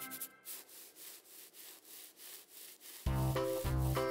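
Felt-tip marker scraping back and forth over a textured toy surface, repeated quick strokes about three a second. Loud background music comes in again about three seconds in.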